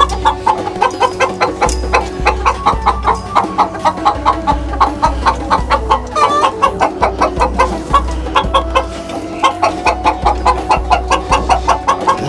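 Chickens cackling in alarm at a snake in the coop: a loud, fast, unbroken run of clucks, about four or five a second.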